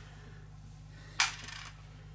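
A single sharp clink about a second in, as small removed metal parts are put down in a small parts tray, with a brief ring after it. A steady low hum lies underneath.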